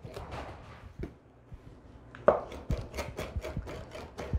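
Mezzaluna rocking knife chopping fresh roots on a wooden cutting board. It is softer for the first couple of seconds, then the blade strikes the board in rapid sharp knocks, about five a second.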